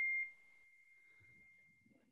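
A steady, high-pitched electronic beep tone held on one pitch, loud at first and dropping to faint about a quarter second in, then trailing off near the end.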